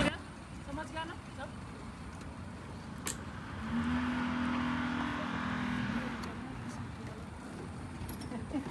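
Go-kart engine running for a couple of seconds in the middle, a steady low drone that rises slightly as it starts, under faint voices. A single sharp click about three seconds in.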